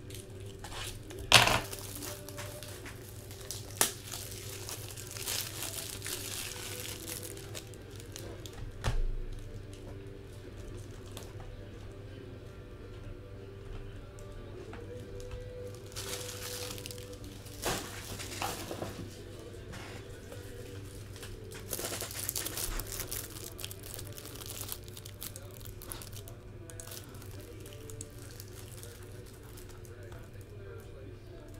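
Trading-card case packaging being torn open and crinkled in scattered bursts, with a sharp knock about a second in. Quiet background music with held tones runs underneath.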